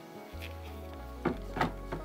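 Soft background music with a low bass note, and two light plastic clicks a little over a second in as a filter cartridge is pushed into the housing of a reverse osmosis filter unit.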